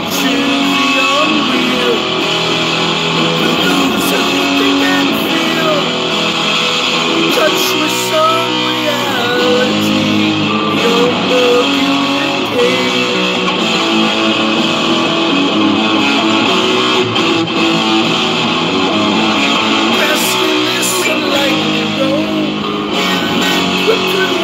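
Solid-body electric guitar strummed and played without a break, a steady run of chords.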